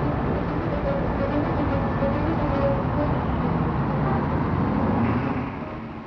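City traffic: a London double-decker bus's engine running as it passes close by, over a steady rumble of other traffic. The sound fades somewhat in the last second.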